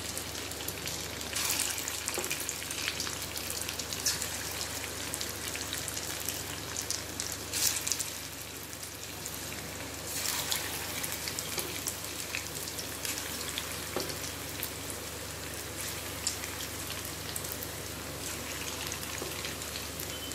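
Idli-batter bondas deep-frying in hot oil in a kadhai on a low flame: a steady crackling sizzle. It swells briefly a few times as fresh dollops of batter are dropped in by hand.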